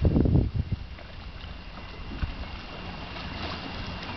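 Wind buffeting the camera microphone in loud, irregular gusts for about the first second, then a steady wind hiss.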